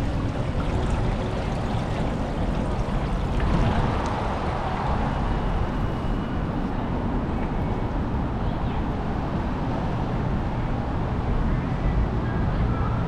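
Water running and splashing steadily in a lava-rock fountain sculpture, with a steady low rumble beneath it.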